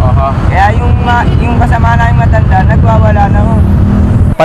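A woman talking over a steady low rumble of road traffic.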